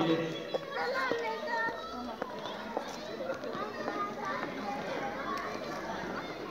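Chatter of many schoolchildren's voices overlapping at once, with no one voice standing out.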